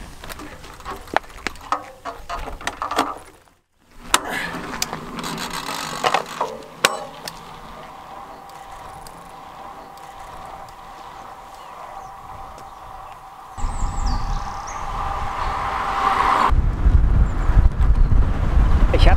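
Time-trial bicycle setting off: sharp clicks and ticks from the bike as the rider clips into the pedals and pulls away. Near the end a loud low rumble of wind on the microphone sets in as the moving bike is filmed at speed.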